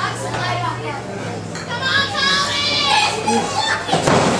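Wrestling crowd yelling and shouting, with high children's voices prominent, getting louder in the second half.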